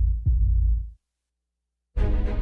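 Two deep heartbeat-like thumps in quick succession, a double beat with nothing above a low bass boom, then silence for about a second.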